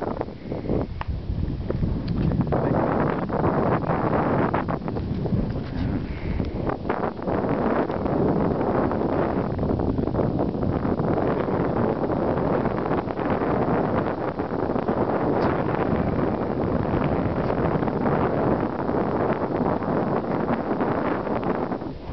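Wind blowing across the camera's microphone: a steady rushing noise, lighter for the first couple of seconds and then constant.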